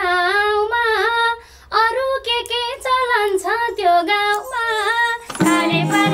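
A woman sings a Nepali dohori folk song solo, in a high voice with ornamented, sliding phrases and short breath pauses. Near the end a harmonium, a bansuri flute and a madal drum strike up together.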